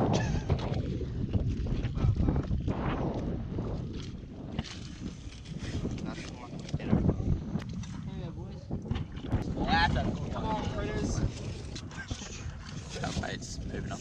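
Wind buffeting the microphone as a steady low rumble, with scattered short knocks.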